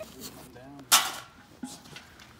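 A single sharp click about a second in, from a hand grabbing and tugging at a metal sap spile driven into a maple trunk that won't come out.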